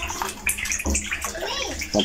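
Water splashing and sloshing as a mass of live fish squirm together in a container.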